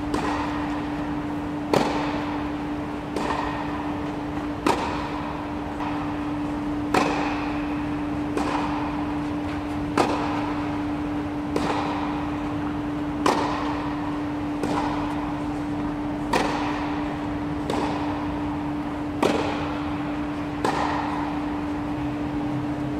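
Tennis balls struck by rackets during a feeding drill on a clay court, a sharp hit about every second and a half, each echoing in the big air-dome hall, over a steady low hum.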